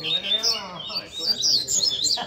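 Caged double-collared seedeaters (coleiros) singing: fast runs of high, sharp chirps and short trills, densest in the second half.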